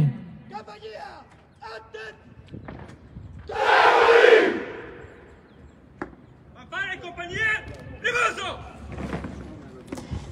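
A company of soldiers shouting a battle cry in unison, one loud massed shout about three and a half seconds in that lasts just over a second.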